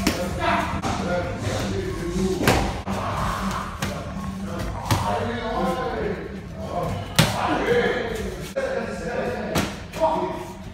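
Boxing gloves and kicks landing during light kickboxing sparring: several sharp impacts, the loudest about two and a half and seven seconds in, over background music.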